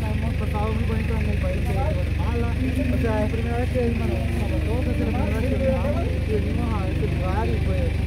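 Quiet talk from several people standing close by, over a steady low rumble like traffic or an idling engine.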